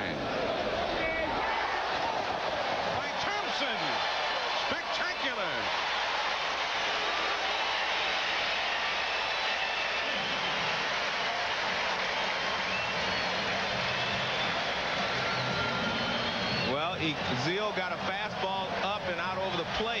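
Ballpark crowd noise: a steady murmur of a large stadium crowd, with a few individual voices standing out near the end.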